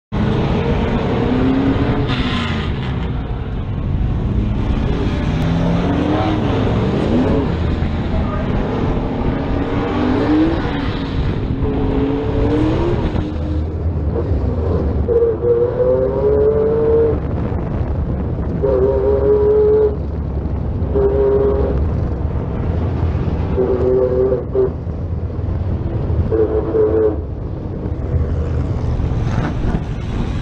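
Sportsman-class stock car engine heard onboard, revving up and down as the car pulls out onto the oval. From about halfway it runs in stretches of throttle a second or two long with short lifts between, over a constant low rumble.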